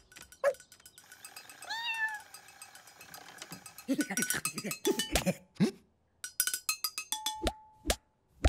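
Chopsticks drumming on metal cooking pots: a run of quick, uneven strikes starting about four seconds in, some leaving a short metallic ring, one ringing on for about a second near the end. About two seconds in, before the drumming, there is a short cat-like animal call that rises and falls in pitch.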